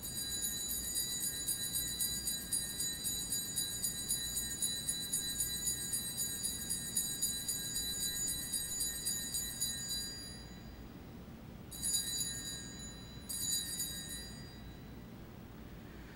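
Altar bells shaken at the elevation of the consecrated host, ringing with a fast shimmer. One long ring stops about ten seconds in, followed by two short rings of about a second each.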